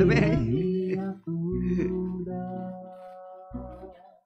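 The closing bars of a recorded song with acoustic guitar and singing. The voice stops about a second in, and the final held notes fade out.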